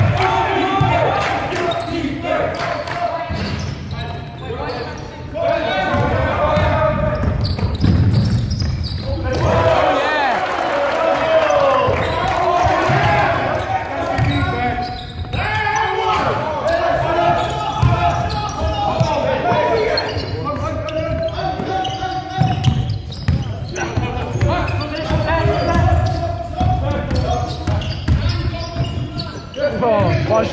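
A basketball bouncing on a wooden sports-hall floor during play, with players' voices and shouts carrying through the large hall.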